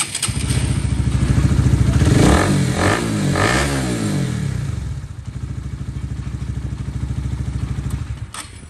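Honda Winner's 150cc single-cylinder engine running. It is revved twice, about two and three and a half seconds in, then settles to a steady idle. This is a test run after the water pump shaft and gear were replaced to cure a 'rè rè' buzz caused by a loose shaft-to-gear fit, which the mechanic calls solved.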